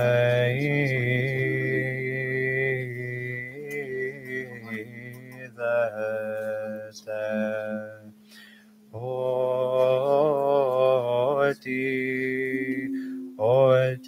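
Orthodox liturgical chant: voices sing long, slow melodic phrases over a steady low held note beneath. The singing breaks off briefly about eight seconds in, then resumes.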